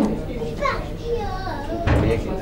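People's voices in a room, a child's voice among them, with no words clear; a single sharp knock just before the end.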